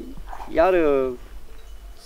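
A man's voice drawing out a single word with a falling pitch; no other sound stands out.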